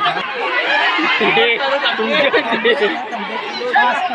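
Crowd of onlookers chattering and calling out, many voices overlapping, with one voice shouting about a second in.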